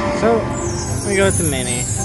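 Dancing Drums slot machine sound effects as a mini jackpot win ends: two short voice-like swoops sliding in pitch, and a glittering shimmer sweeping downward in pitch.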